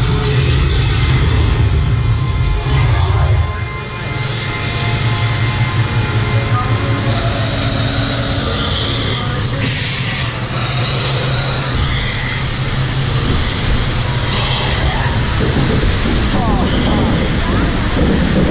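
Steady low mechanical rumble of a theme-park boat ride moving through its show building, under the ride's soundtrack of voices and music.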